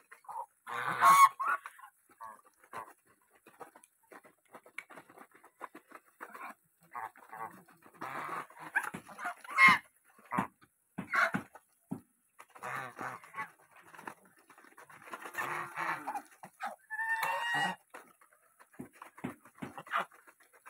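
A flock of domestic geese eating grain from a plastic bowl: constant rapid clicking and rustling of bills in the feed, broken by occasional honks, the loudest about a second in and about two thirds of the way through.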